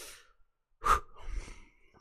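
A man breathing and sighing into a close microphone, with a short sharp mouth sound just under a second in.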